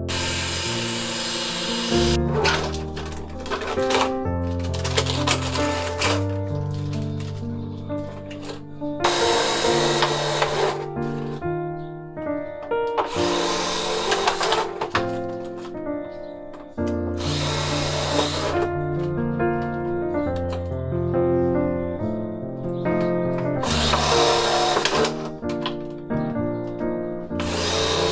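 Cordless drill running in several short bursts of a second or so as it bores holes through a plastic bottle, over background music with a bass line.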